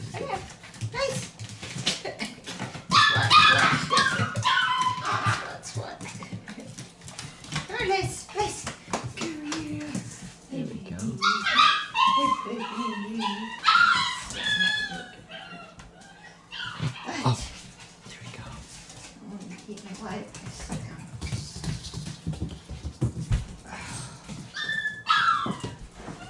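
Shiba Inu puppy yipping and whining during play, in high, wavering bursts, the loudest from about three to five seconds in and again from about eleven to fourteen seconds in.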